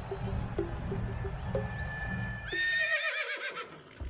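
A horse whinnying about two and a half seconds in, a high quavering call that falls away. Before it there is rhythmic background music with repeated short notes, which fades out around the call.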